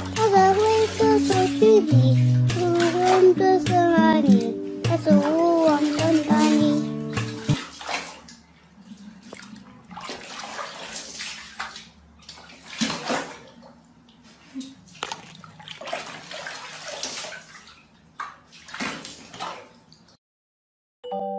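A song plays for about the first seven seconds, then water splashes and sloshes irregularly in a plastic tub as a kitten is washed by hand.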